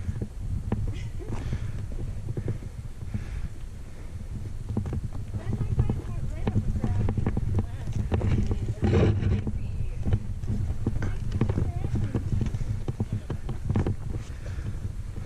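Boots scrambling over rough, loose rock: irregular clicks and knocks of boot on stone and rock on rock, busiest about nine seconds in, over a steady low rumble.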